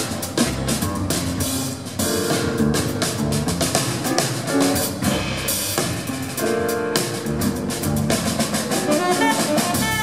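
Jazz rhythm section playing with the horns silent: drum kit with cymbals and rimshots, piano chords and double bass. Near the end a tenor saxophone starts to come in.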